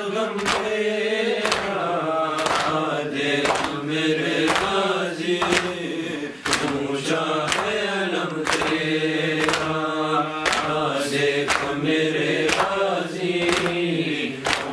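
Men's voices chanting a noha, a Muharram mourning lament. Chest-beating (matam) strikes keep time with it, about once a second.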